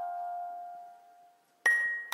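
Gentle lullaby music of bell-like struck notes: a single ringing note fades away to near silence, then a new, higher note is struck near the end.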